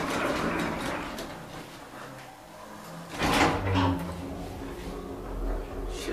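Old elevator's car doors sliding shut about three seconds in, after a car button is pressed, followed by a steady low hum as the geared traction machine starts the car moving.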